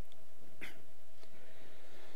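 Pause in a large room: a low steady rumble and a faint steady hum, with one brief soft sound about half a second in.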